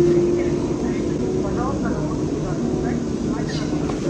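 A steady hum fills the room, with faint voices talking in the background.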